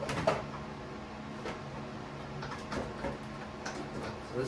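Plastic bonnet panel of a Kubota BX2370 tractor knocking and rubbing against the radiator support as its tabs are worked into their slots: a few light knocks and scrapes, the sharpest right at the start.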